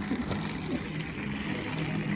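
Small electric motor of a battery-powered toy train running with a steady hum.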